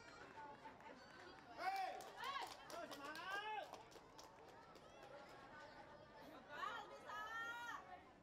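Faint, distant high-pitched voices calling out in two bursts, about two seconds in and again near the end, over a low background of outdoor ground noise.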